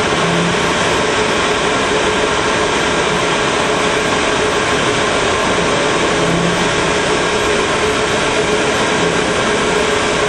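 Steady machinery noise: a constant hiss with a steady hum, unchanging in level.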